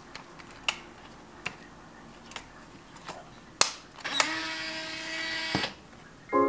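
Compact point-and-shoot 35 mm film camera being loaded: a few small plastic clicks as the film is seated, a sharp snap as the back door closes, then the camera's motor whirs for about a second and a half, rising slightly in pitch, and stops abruptly as it auto-advances the film to the first frame.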